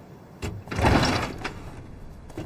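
A door being opened: a clunk about half a second in, then a loud sliding rush that swells and fades within about a second.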